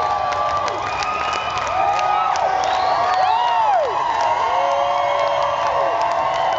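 Large festival crowd cheering and whooping, many voices rising and falling over one another, with scattered claps.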